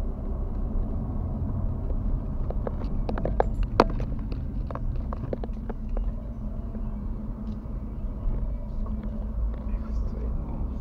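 Car driving at night heard from inside the cabin through a dashcam: a steady low rumble of engine and tyres on the road. A cluster of sharp clicks and knocks comes about three to four seconds in.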